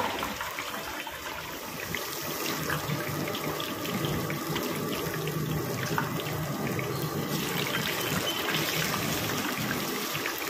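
Medu vadas deep-frying in a kadai of hot oil: a steady sizzle and bubbling, thick with small crackles, as freshly dropped batter rings fry.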